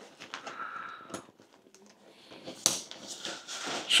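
Rolled-up tent fabric rustling as a webbing strap is pulled round it, with a few light clicks and then a sharper click about two-thirds of the way through as the strap's plastic buckle snaps shut.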